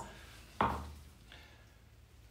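A single knock on a tabletop a little over half a second in, dying away over about a second.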